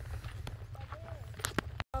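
Footsteps on a gravel path, a scatter of irregular crunches, over a steady low rumble of wind on the microphone. Faint voices are heard in the middle. The sound cuts off abruptly just before the end.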